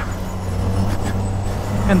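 A 125cc racing go-kart engine running steadily at speed, heard from on board the kart.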